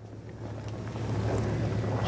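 Wind buffeting the microphone, a rushing noise that swells steadily over two seconds, over a low steady hum.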